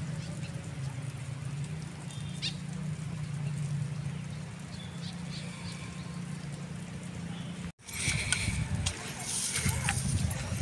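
Wind rumbling steadily on the microphone on an open ridge, with faint distant voices. After a sudden cut near the end, the wind noise is louder and rougher, with rustling.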